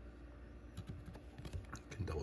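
Cardboard trading card being turned over in the fingers: faint, light clicks and ticks of card stock against fingertips, starting a little under a second in and coming quicker near the end.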